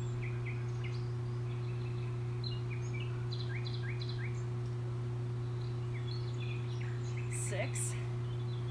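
Small birds chirping in short repeated notes over a steady low hum.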